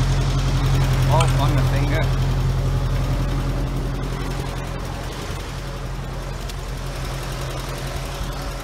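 Tractor engine idling with a steady low hum, fading somewhat from about halfway through.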